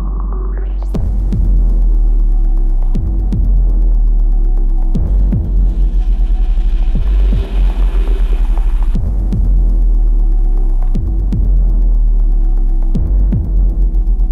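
Dark, droning electronic music played live: a heavy sub-bass drone with deep bass hits that fall in pitch about every two seconds. A rising filter sweep opens up the top end about a second in, and a hissing band of noise swells in the middle and cuts off.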